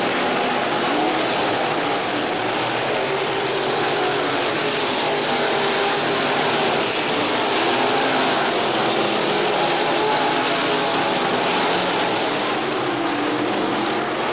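IMCA Sport Mod dirt-track race cars' V8 engines running hard at racing speed, several cars at once, a loud steady engine noise with the pitch shifting slightly as they go around the oval.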